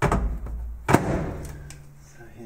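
Samsung microwave oven door being pushed shut: a low thump, then a sharp latch click about a second in.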